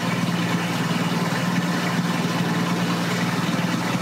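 1975 AMC Gremlin X engine idling steadily, with an even, rapid pulse.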